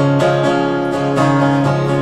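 Steel-string acoustic guitar strummed in a steady vamp, the chords ringing on between strokes.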